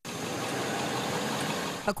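Steady engine and road noise inside an amphibious duck boat's open-windowed cab as it drives, an even rush that cuts off just before the end.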